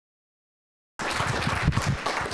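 Dead silence, then about a second in the sound cuts in abruptly on a steady, noisy rustling wash of room sound with faint irregular knocks underneath.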